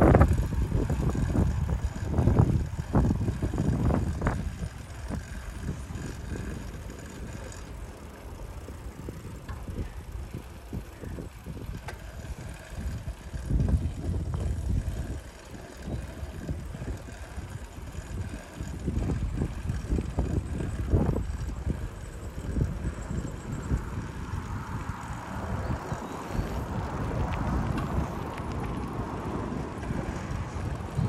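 Wind buffeting the microphone of a camera on a moving bicycle, over the bike's tyre and road noise. Gustier and louder in the first few seconds.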